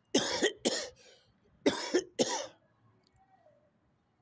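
A man coughing hard: two double coughs about a second apart.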